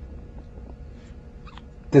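A pause in the talk: low steady background hum with a faint click shortly before the end, then a man's voice starts just at the end.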